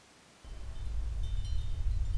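Film soundtrack: near silence, then a low rumble swells in about half a second in and keeps building, with faint high chime-like tones over it.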